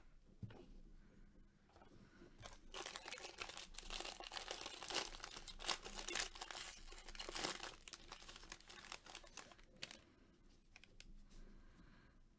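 Foil wrapper of a Bowman Draft baseball card pack being torn open and crinkled by gloved hands: a dense run of crackling and tearing from about two seconds in until about eight seconds, then fainter rustling as the cards come out.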